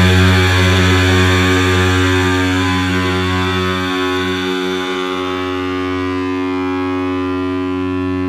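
A heavy rock band's final chord held as one long distorted drone after a last hit, ringing out and slowly fading, its upper tones dying away first.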